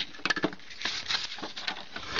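Light handling noise: a quick, irregular run of small clicks and rustles.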